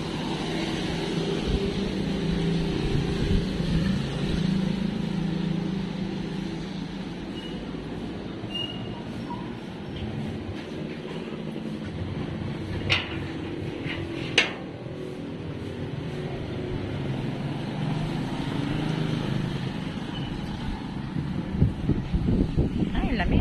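Steady low hum of motor vehicles on a wet road, with two sharp clicks about a second and a half apart near the middle.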